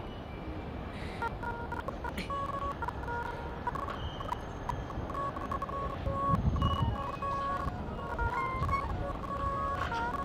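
Short beeping tones at a few different pitches, scattered irregularly over a steady low rumbling noise. A louder low rumble swells about six seconds in.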